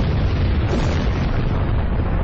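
Explosion sound effect: a deep, steady rumble carrying on from a boom, its upper edge slowly dulling.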